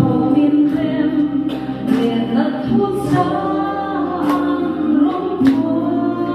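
A woman singing a song into a microphone over accompaniment of sustained chords, the chord changing about five and a half seconds in.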